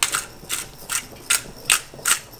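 Hand-twisted pepper mill grinding peppercorns, a gritty crunch at each twist, about five twists in a steady rhythm.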